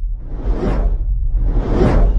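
Cinematic whoosh effects of a logo sting over a steady deep rumble: two whooshes that swell and cut off, about a second apart.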